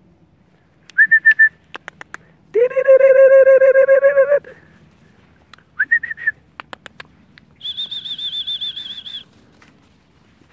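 A person whistling a few short warbling calls, the longest and loudest a lower, wavering whistle a few seconds in and a higher trilled one near the end, with a few sharp clicks between them.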